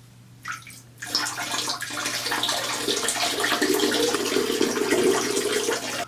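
A stream of urine splashing into toilet-bowl water as a pH test strip is wetted in it. It starts about a second in and runs steadily, growing fuller partway through.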